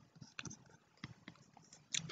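A few faint, scattered clicks and taps from the pen or mouse being used to draw on the screen, in an otherwise quiet room.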